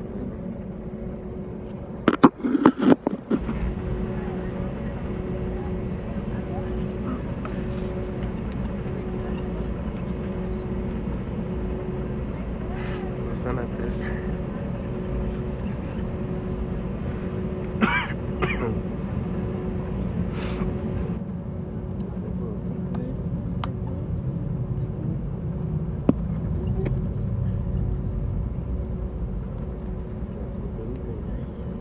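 Steady drone of a jet airliner's engines and cabin, with a constant humming tone. About two seconds in, a person coughs several times in a quick burst.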